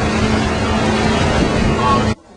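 A 115-horsepower outboard motor running steadily at speed under way, a constant low drone, mixed with the rushing noise of the boat's wake.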